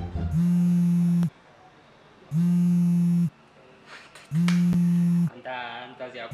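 Mobile phone buzzing on the counter on vibrate, a steady low buzz of about a second, three times at two-second intervals: an incoming call.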